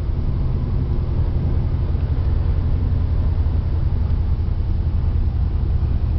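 Dodge Dakota pickup running on wood gas, heard from inside the cab while driving at a steady speed: a steady low engine rumble mixed with road noise.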